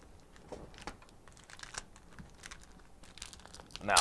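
Light, irregular clicks and soft crinkles of trading cards and a foil booster-pack wrapper being handled on a tabletop, a little busier near the end as the pack is picked up.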